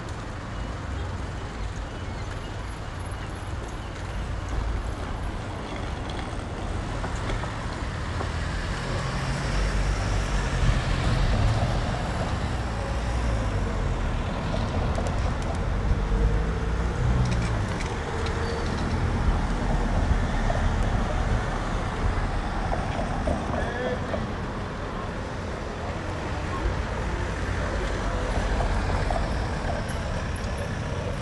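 City street ambience: traffic, with a low rumble that swells in the middle, and the voices of passers-by.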